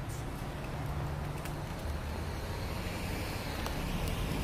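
Steady low rumble of road traffic passing by outdoors, with two faint ticks, one about a second and a half in and one near the end.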